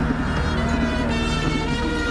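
A car's engine running as it drives slowly along the street, with music playing underneath.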